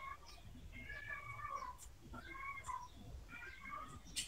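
Faint, high-pitched calls repeated four times, each with a bending pitch, picked up through a video call's open microphone.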